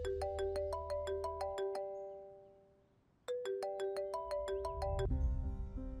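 Mobile phone ringing: a short ringtone melody of quick, bright notes plays, fades out, and starts over a little past the halfway point.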